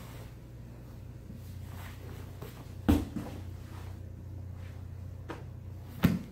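A body landing on a padded grappling mat with one heavy thud about halfway through, then a softer bump near the end, over a steady low hum.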